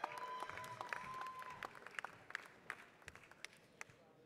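Scattered audience applause, fuller for the first second or two and then thinning to a few separate claps.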